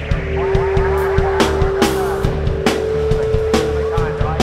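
Loud, distorted electronic noise-rap backing from a live set, with no vocals: a heavy pulsing bass, irregular drum hits and a held synth tone that steps up in pitch a little past halfway. Warbling, squealing synth noise runs over the first half.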